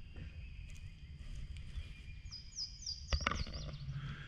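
A bird calling a quick run of about five high, falling notes, over a low steady rumble, with a single sharp knock just after the calls begin.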